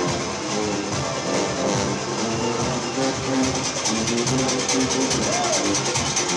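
Junkanoo band playing live: brass horns, including a sousaphone, holding notes over a steady, quick beat of percussion that grows stronger about halfway in, with voices in the crowd.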